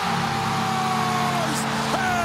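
Carolina Hurricanes arena goal horn sounding a steady multi-tone chord that comes on right at the outset over a cheering crowd, signalling a home-team goal.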